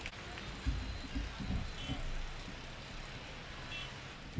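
A quiet pause with a few soft, low thumps a little under a second to a second and a half in, over faint steady background noise.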